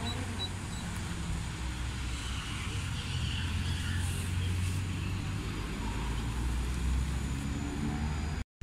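Street traffic: a motor vehicle running close by, its low rumble growing stronger in the middle over a steady background of road noise.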